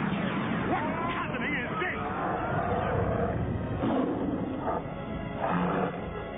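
Cartoon soundtrack: a monster's roaring growl with voice-like cries rising and falling in pitch in the first couple of seconds, over dramatic music.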